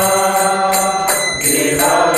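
A man chanting devotional prayers, his voice breaking off briefly about halfway through, over small hand cymbals struck about twice a second.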